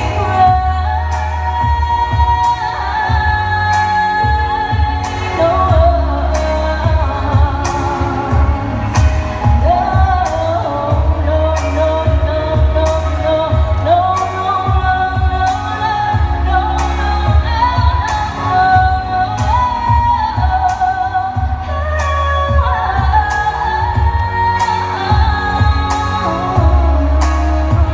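A woman singing a song into a handheld microphone, amplified, over backing music with a heavy bass and a steady beat.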